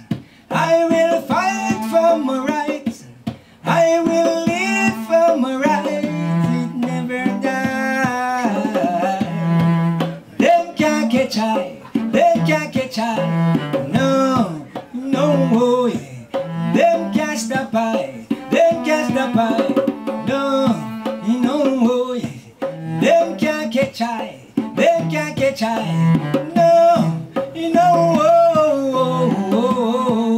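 A bowed cello playing a sliding melody over a Nyabinghi hand drum struck in a steady beat.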